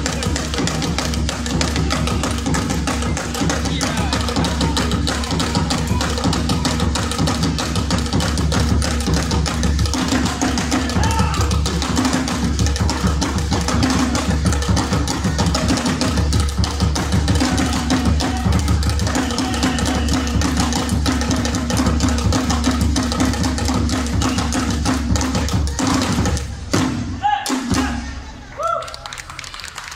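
Traditional African hand drums played together in a dense, driving rhythm, breaking off about a second before the end.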